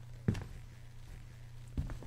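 Faint steady low hum with two short, soft thumps, one about a third of a second in and one near the end.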